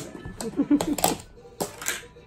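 Several sharp clicks and knocks of kitchen utensils and containers, about two a second, a metal potato masher in a glass mixing bowl and a plastic butter tub being handled, over background music.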